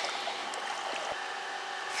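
Steady hiss of river water moving around a floating plastic kayak, with a couple of faint ticks.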